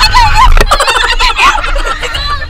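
Several women laughing and shrieking on a fast-spinning swing ride, with a quick run of cackling pulses in the middle, over wind rumble on the microphone.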